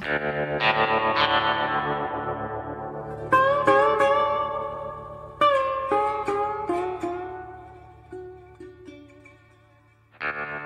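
Short podcast segment jingle: music of struck notes and chords that ring and die away, with new phrases starting about a third and about halfway through, fading out near the end. It marks the change to a new segment of the show.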